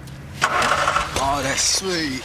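A stolen car's engine starts and runs, with a sudden loud rush of noise about half a second in; voices follow.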